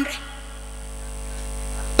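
Steady electrical mains hum from a microphone and sound system in a pause in speech: a low drone with fainter hiss above, getting slowly louder.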